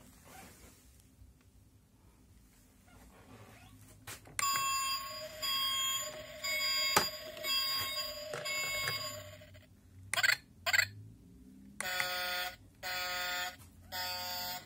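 Electronic sound module of a Paw Patrol Paw Patroller toy trailer playing. From about four seconds in it plays a short electronic tune of stepped tones, then gives two short blips, and near the end a run of evenly spaced buzzing beeps.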